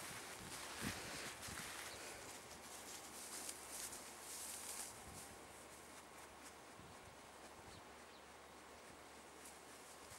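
Quiet outdoor ambience with faint rustling and a few soft clicks, mostly in the first half, then a steady faint hiss.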